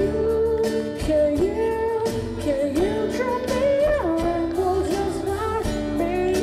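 A man singing into a microphone while strumming an acoustic guitar, with long held notes that slide in pitch.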